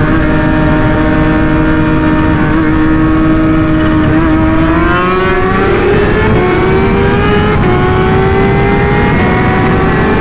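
Kawasaki Ninja H2's supercharged inline-four running at speed under heavy wind noise. The engine note holds steady for about four seconds, then climbs as the bike accelerates.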